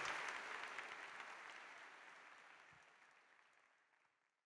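Audience applause, an even patter of many hands clapping, fading steadily away to silence about three and a half seconds in.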